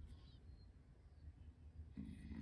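Near silence: room tone with a low steady hum.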